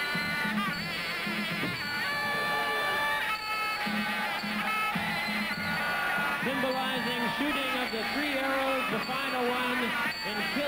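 Traditional Muay Thai ring music (sarama): a wavering, pitched wind melody, typical of the Thai pi oboe, over a steady drum pulse.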